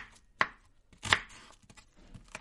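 Kitchen knife chopping green vegetable on a plastic cutting board: two sharp strikes of the blade on the board, a little under a second apart.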